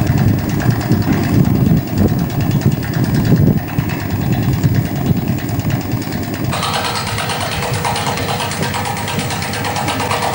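Engine of the rail-recovery machinery running steadily, a low rumble. About six and a half seconds in, a brighter hiss joins it.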